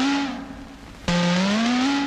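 Tamil film song music: a held note slides upward and fades, then the same rising slide starts again sharply about a second in.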